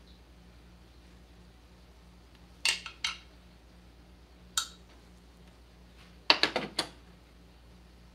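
Sharp metallic clinks of a hand tool against outboard motor parts: two close together a few seconds in, one more near the middle, then a quick run of four or five a little after six seconds.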